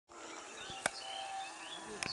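Outdoor station ambience before the train comes: small birds chirping and insects buzzing over a steady background hiss, with one sharp click a little under a second in.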